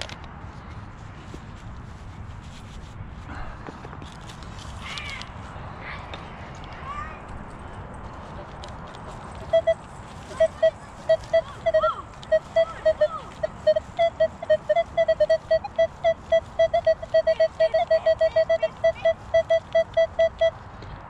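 Minelab Equinox metal detector with a 6-inch coil sounding its target tone: a rapid string of short, same-pitched beeps, about four a second and closer together toward the end, starting about halfway through as the coil passes over a buried target. The first half is quieter, with only faint scattered sounds.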